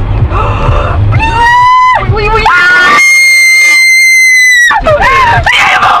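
A woman screaming inside a car: two loud, very high-pitched screams, the second held steady for nearly two seconds, then frantic excited talking. Low road rumble from the car is heard in the first second.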